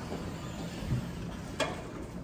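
Elevator cab in motion with a low steady rumble, a soft thud about a second in and a sharp click about one and a half seconds in.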